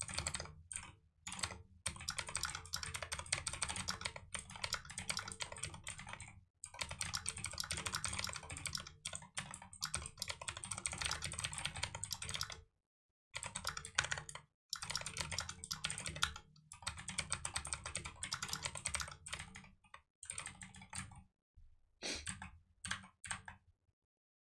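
Typing on a computer keyboard: rapid runs of keystrokes broken by short pauses, thinning out to a few scattered keys near the end.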